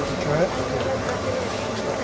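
A short bit of speech over a steady background rumble.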